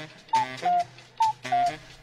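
Clock-like tick-tock jingle for the hour's time call: a short higher chime and then a lower one, each led by a click, played twice in the two seconds, just under a second apart.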